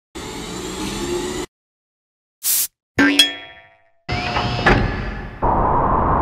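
A string of separate cartoon sound effects with dead silence between them: a short whirring noise, a brief hiss, then a springy boing that rings out about three seconds in. After that comes a longer mechanical whirring with a faint rising whine, louder near the end.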